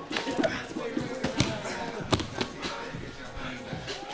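Grapplers' bodies thudding and slapping on foam mats during a takedown scramble: a string of sharp thumps, the loudest about a second and a half and two seconds in, over background music.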